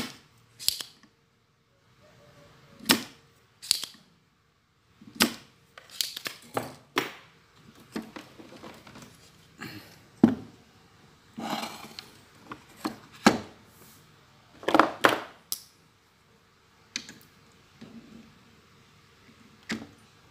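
Hand tools and a TV circuit board being handled on a workbench while a capacitor is desoldered and pulled: a dozen or so sharp clicks and knocks at irregular intervals, with a couple of longer scraping rustles in the middle.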